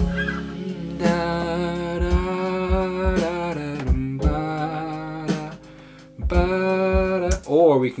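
A man sings a slow, wordless ballad melody, with held notes and sliding pitch, over a backing track with a steady low tone and low drum thumps; the melody is being tried out in the key of C sharp. It drops away briefly just past the middle, and a short spoken phrase comes at the very end.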